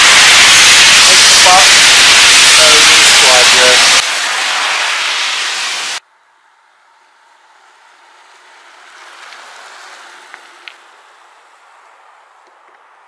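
Heavy rain pouring down, a loud steady hiss, with faint voices under it. The hiss drops in level about four seconds in and cuts off suddenly about two seconds later, leaving a faint quiet background with a couple of soft clicks.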